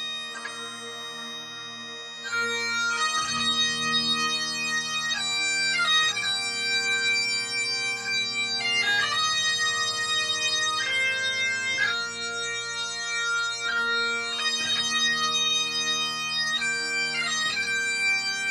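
Bagpipes playing a slow melody over steady, unbroken drones. The tune moves from note to note about once a second and grows louder a little over two seconds in.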